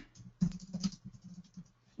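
Typing on a computer keyboard: a quick run of keystrokes spelling out a short phrase.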